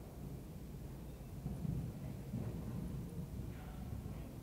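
Muffled hoofbeats of a horse cantering on indoor arena sand, heard as irregular low thuds over a steady low hum.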